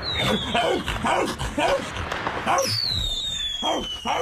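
A man imitating a dog barking and choking against its choke collar, in short yelping barks about twice a second. Over the barks comes a high whistle that falls in pitch, briefly at the start and again for over a second near the end, like a whistling firework.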